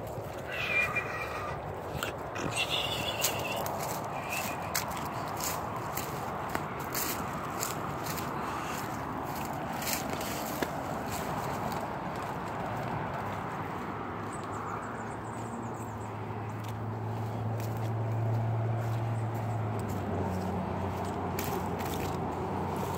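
Footsteps crunching and snapping through dry brush and leaf litter, with scattered handling clicks over a steady outdoor background. A couple of short high animal calls sound in the first few seconds, and a low droning hum swells and fades about two-thirds of the way through.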